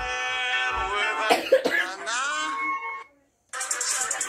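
A voice holds one long sung note, then slides up and down in pitch, and is cut off abruptly about three seconds in. After a short silence, music starts near the end.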